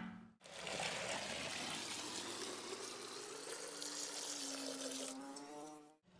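Water pouring steadily into a large metal pot that has stones laid on its bottom. It starts just under half a second in and stops near the end, with a faint tone that slowly rises.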